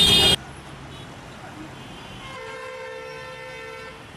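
A vehicle horn gives one steady blast of about a second and a half, a little past the middle, over a low background of street traffic. The opening fraction of a second holds loud speech that cuts off abruptly.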